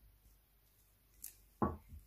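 A cut-glass bowl set down on a cloth-covered table: a dull double knock about one and a half seconds in, preceded by a faint click.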